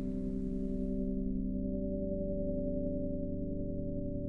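Ambient soundtrack drone: several steady low tones held together, with a few faint ticks about halfway through.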